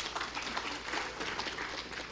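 Audience applauding, a dense patter of handclaps that tapers off toward the end.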